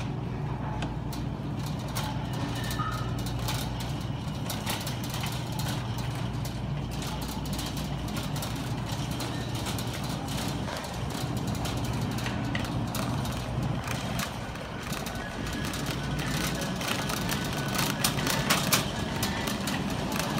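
Shopping cart rolling across a store floor, a steady rumble with frequent small rattles and clicks, over a steady low hum.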